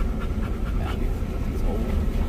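Low, steady rumble of a vehicle driving over a rough dirt trail, heard from inside the cabin, with faint voices.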